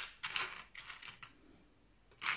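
Small metal charms clinking and rattling in a dish as fingers stir through them: a few short bursts of light clicks in the first second or so, then quiet.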